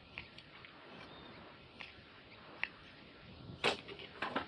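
Scrap being handled at a distance: a few light clicks and ticks, then a louder clatter about three and a half seconds in.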